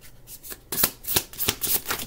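An oracle card deck being shuffled by hand: a handful of short, quick card sounds, mostly in the second half.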